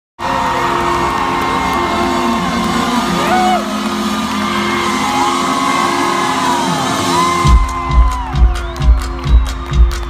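Pop song intro: sustained chords with gliding sung notes. About three quarters of the way in, a steady kick-drum beat kicks in at a little over two beats a second.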